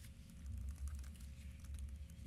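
Faint, irregular clicking of a computer keyboard being typed on, over a low steady hum.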